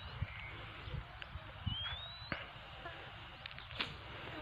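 Faint outdoor ambience: a low rumble with a few soft clicks, and one short rising whistled bird call about a second and a half in.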